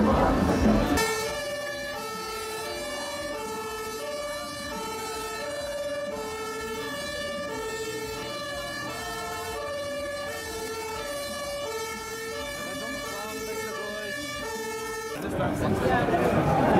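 Two-tone emergency-vehicle siren of the German 'tatü-tata' kind, switching evenly back and forth between a lower and a higher pitch, each held under a second. It cuts in about a second in and stops abruptly near the end.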